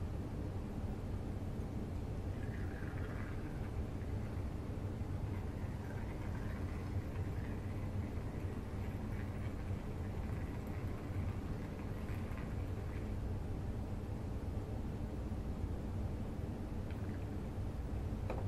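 A steady low hum of room background noise, with no clear sound of the liquid starch being poured.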